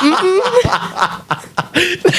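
A man laughing in short chuckles and snickers into a close microphone.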